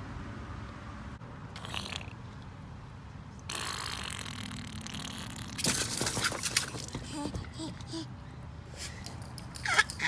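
Water splashing and sloshing around a baby in an inflatable swim float in a shallow blow-up pool, with a cluster of sharp splashes about six seconds in. A short baby squeal near the end.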